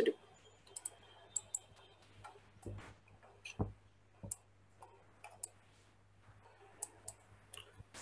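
Computer mouse clicking, faint and irregular: a dozen or so single clicks spread over several seconds. A faint steady low hum underneath.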